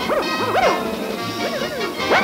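Cartoon soundtrack music with a string of short yelp-like sounds, each rising and falling in pitch, coming in quick clusters over sustained music tones.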